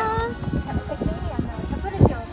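Several people laughing and chatting with light hand clapping.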